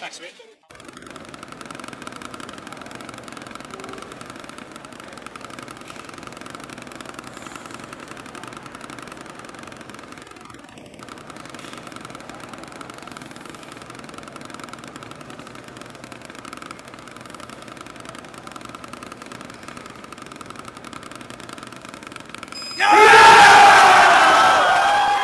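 Drumsticks playing a very fast, even stream of single strokes on a practice pad wired to a Drumometer stroke counter, at about twenty strokes a second. About a second before the end, a loud burst of shouting and cheering breaks out as the timed run ends.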